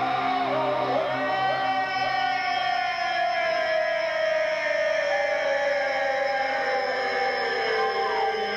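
Live rock band in a slow, spacey instrumental passage. An electric guitar bends a few wavering notes, then holds one long note that slides slowly down in pitch over steady held low tones.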